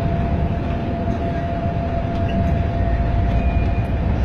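Steady low rumble of a coach's engine and road noise heard from inside the cab while driving, with a thin steady whine running over it.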